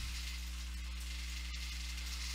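Steady low electrical hum with an even background hiss, the recording's noise floor between sentences of speech.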